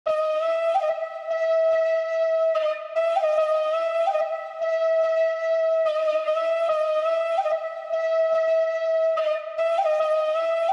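Solo flute melody looping a short phrase of held and stepping notes that repeats about every three seconds, with only light clicks beneath and no drums or bass yet: the intro of a UK drill beat.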